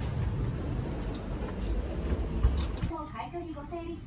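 Low, steady rumbling background noise, then background music with a simple melody starting about three seconds in.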